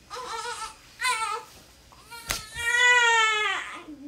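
Three-week-old baby girl fussing: two short cries, then a sharp click about two seconds in, followed by one long, loud cry that rises and falls in pitch. Her mother takes the fussing for gas discomfort, the baby pushing out gas.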